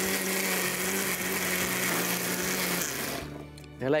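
Electric mixer-grinder running, grinding soaked dal and spinach into a paste, with a steady motor hum under the whirr; it winds down and stops a little after three seconds in.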